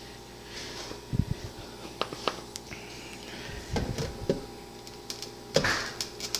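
Handling knocks of a NutriBullet cup packed with frozen banana being shaken and moved about. There are a few separate thuds and clunks, with a slightly longer knock near the end as the cup goes back on its base. A faint steady hum runs underneath.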